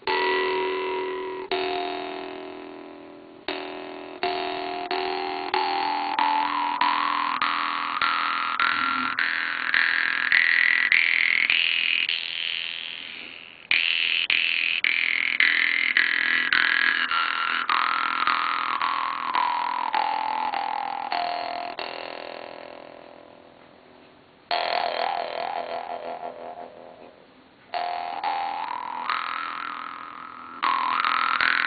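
Vietnamese three-tongued Jew's harp plucked in quick repeated strokes over a deep drone. A bright overtone glides slowly upward through the first half, then slides back down, and a wavering overtone follows near the end.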